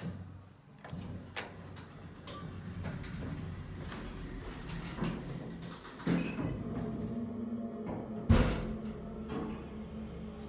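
Vintage hydraulic elevator: a car button clicks as it is pressed and the car doors slide shut with some rattling. About eight seconds in comes a single heavy thud, the loudest sound, and after it a steady low hum as the car sets off.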